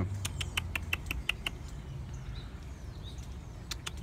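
Small animal chirping: a rapid run of short, sharp chirps, about six a second, lasting over a second, then a second run starting near the end.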